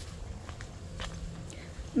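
Footsteps walking on a dirt path, faint taps about every half second over a low steady rumble.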